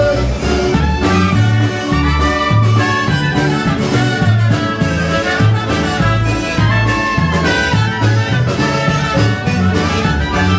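A live polka band playing an instrumental polka: clarinet, trumpet and trombone over a concertina, electric guitar, keyboard and drums, with a steady bass beat.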